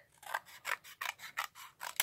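Scissors snipping through cardstock in a quick run of short cuts, about four or five a second.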